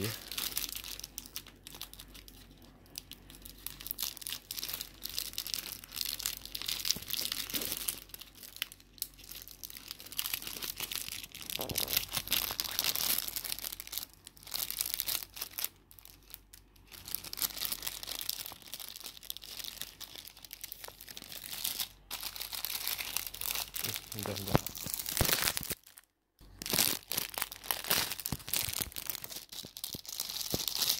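Paper and clear plastic bread packaging crinkling and tearing as it is opened by hand, in irregular stretches. A short silent gap comes about 26 seconds in.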